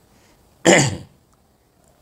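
A man's single short, sharp cough to clear his throat, about two-thirds of a second in.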